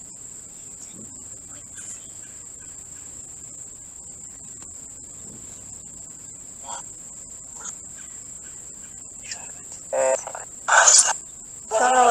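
Crickets trilling steadily and high-pitched in the grass. Near the end come two short, louder bursts of voice-like sound from the phone's Necrophonic spirit box app.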